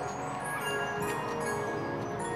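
Music of chiming bells: many ringing bell notes at different pitches, struck and left to fade, overlapping one another.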